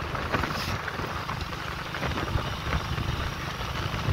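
A motor vehicle engine running with a steady low drone, with rushing noise over it.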